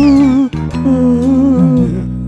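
Background film music: a slow melody of long held, slightly wavering notes over a steady low drone.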